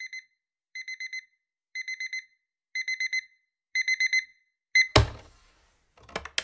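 Electronic alarm beeping in quick groups of four, about one group a second, each group louder than the last. Near the end a single thump cuts the beeping off.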